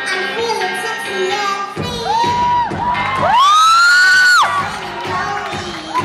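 A young girl singing a pop song into a microphone over a backing track, with one long, loud high note that rises and holds for about a second midway. Audience cheering and shouting.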